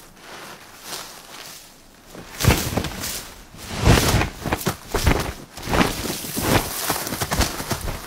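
A hawk scrabbling in gravelly soil and beating its wings as it digs into an iguana burrow: a run of irregular scuffs, crunches and thumps, sparse at first and busier from about two and a half seconds in.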